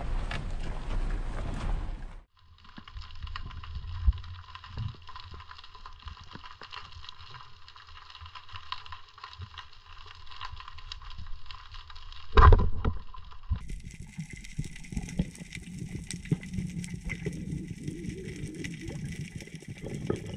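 Wind buffeting the microphone for the first two seconds, then underwater sound through a camera's waterproof housing: a soft hiss with many small scattered clicks and crackles and a faint steady high whine. One sharp loud knock comes about twelve and a half seconds in.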